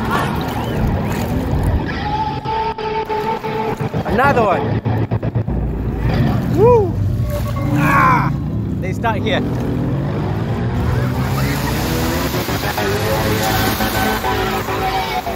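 People's voices talking and calling out, with a few drawn-out exclamations that rise and fall in pitch, over a steady low rumble that sets in about five seconds in.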